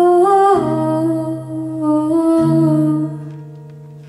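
Female voice holding a long wordless sung note over acoustic guitar chords; the note slides down about half a second in, the chord changes twice, and the voice stops about three seconds in while the guitar rings out and fades.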